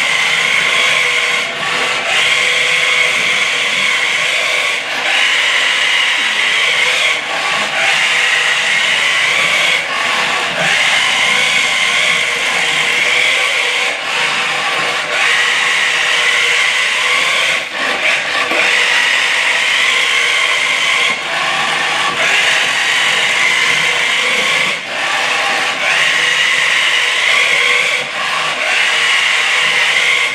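Maisto Tech RC McLaren P1 toy car driving over a hardwood floor: its small electric motor and gears whir, with its wheels rubbing on the wood, the whine swelling and easing every couple of seconds.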